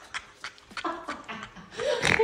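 A woman laughing, quietly at first and louder near the end.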